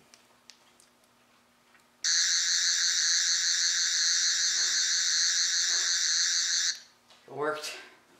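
Loud, slightly warbling electronic buzz from a handheld gadget being switched on and pointed. It starts abruptly about two seconds in, holds steady for about four and a half seconds and cuts off suddenly. A brief vocal exclamation follows near the end.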